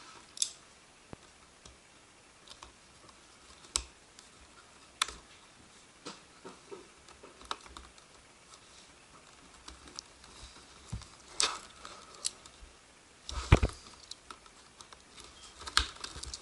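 Hands handling a cardboard product box and working at its top to open it: scattered sharp clicks and taps, with a louder cluster of knocks and rubbing about thirteen and a half seconds in.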